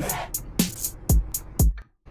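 Electronic drum loop played by the iZotope BreakTweaker software drum machine: deep kicks that drop in pitch, about two a second, with short bright hits between them. It cuts off suddenly near the end.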